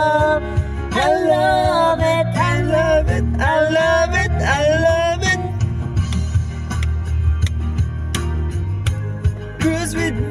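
Backing music with guitar, with a man and a woman singing long, bending notes together into a microphone for about the first five seconds; after that the backing music plays on alone.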